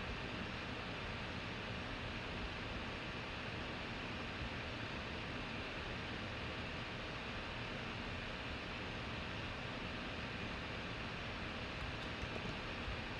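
Steady, even background hiss with a faint thin hum, with no distinct events.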